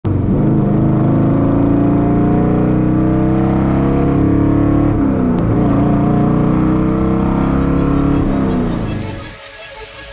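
Chevrolet El Camino's carbureted engine, with its carburetor standing up through the hood, pulling under acceleration: the revs climb steadily, a gear change about halfway, then they climb again. The throttle eases off near the end and the sound fades out.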